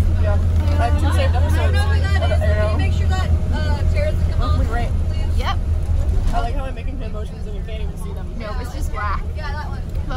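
Steady low drone of a bus driving on the road, heard from inside the cabin, with many passengers chattering over it.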